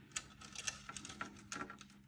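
Faint, scattered light clicks and taps from hands working thin waxed linen and leather cord into a knot over a metal tray, with a faint steady hum underneath.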